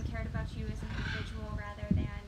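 A woman laughing, a run of short high-pitched voiced sounds that rise and fall.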